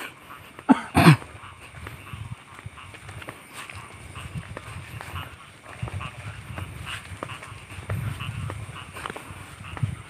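Two short cries, each falling sharply in pitch, about a second in, then footsteps and rustling as people walk along a grassy path.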